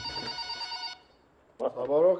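Desk telephone ringing, a steady ring that cuts off about a second in as the call is answered.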